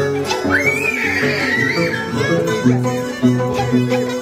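Peruvian harp and violin playing a jarana, with the harp's bass notes plucked steadily underneath. A high, wavering sliding note rises over the music about half a second in and lasts nearly two seconds.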